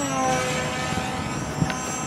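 Electric motor and pusher propeller of an RC EPP flying wing whining in flight, its pitch easing down at first and then holding steady, with a small click about a second and a half in.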